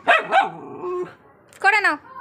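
A small dog barking: two sharp barks in quick succession at the start, and another short bark near the end.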